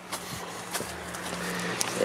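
A car approaching on a nearby road, its tyre and engine noise rising steadily, with a few light clicks of footsteps on dry ground.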